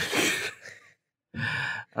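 A man's breathy exhale trailing off after laughter, fading out within the first second. After a brief gap, a short voiced sound just before he speaks again.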